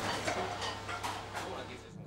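Restaurant kitchen background noise: a steady low hum under a haze of faint voices and activity, cutting off suddenly near the end.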